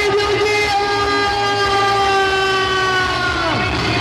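Live band music: a long held note or chord of about three and a half seconds, sliding down in pitch near the end.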